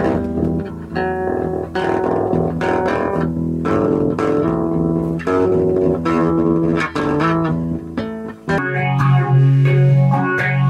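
Electric guitar played through effects, picking a run of separate notes, then switching to a heavier, sustained low chord about eight and a half seconds in.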